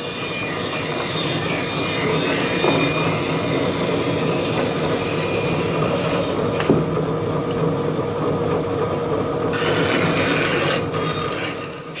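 Bandsaw cutting an ash plank into the curved blank of a hurl: a steady machine hum under the rasping hiss of the blade in the wood. The higher hiss drops away a little past the middle and returns near ten seconds.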